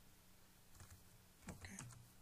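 A few faint computer keyboard keystrokes a little under a second in, as a task number is typed.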